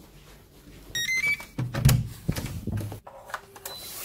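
Hotel room's electronic key-card door lock: a short rising run of beeps about a second in as the card is read, then the clunk and clicks of the lock and handle as the door is opened.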